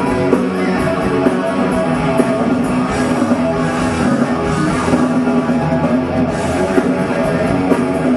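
Live rock band playing loudly: electric guitars and bass over a full drum kit, with no vocals.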